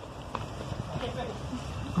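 Wind rumbling on the microphone over a low outdoor background, with faint distant voices.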